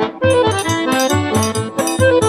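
Accordion playing an instrumental melody phrase in a northeastern Brazilian song, over a quick steady bass pulse and light bright percussion keeping the beat.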